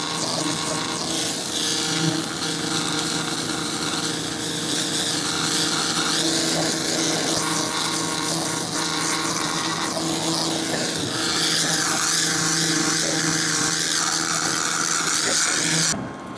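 2000 W fiber laser cleaner stripping rust from a steel sign: a steady high hiss over a low hum as the galvo head sweeps the beam across the surface. The hiss cuts off right at the end.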